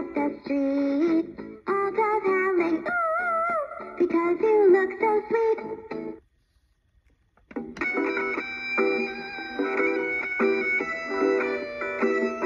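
B. Toys Woofer toy dog guitar playing a pre-recorded tune. The tune stops about six seconds in, and after a second and a half of silence another tune starts.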